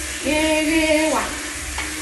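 Food sizzling in a pot on the stove as it is stirred. A voice holds one sung note just after the start, then slides down and stops near the middle.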